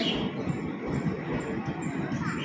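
Passenger coaches of an Indian Railways express train rolling past a platform: a steady rumble from the wheels on the rails with many irregular short knocks.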